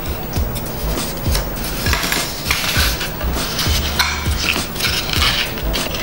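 Background music, over the scratchy scraping of a wooden barbecue skewer pushed along a score cut in foam board, crushing the foam to open the cut.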